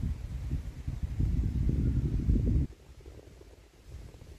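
Wind buffeting a phone's microphone: a gusty low rumble that cuts off suddenly more than halfway through, leaving only faint outdoor background.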